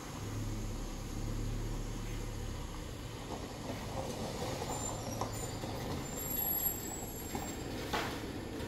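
A car's engine running low and steady as it drives slowly away, its rumble fading after the first couple of seconds.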